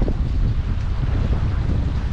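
Wind buffeting the microphone, a steady low rumble with a fainter hiss above it.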